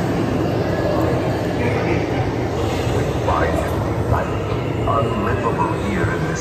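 A steady low rumble inside the Haunted Mansion dark ride, with faint, indistinct voices about three to five seconds in.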